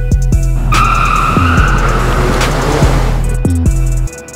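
Car tyres screeching, starting about 0.7 s in with a high steady squeal that lasts about a second and a half, then trails off into a hiss. Music with a deep bass line plays throughout.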